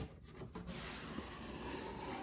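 Cardboard shipping box being opened by hand: quiet rubbing and scraping of the cardboard lid and flaps, with a few light clicks near the start.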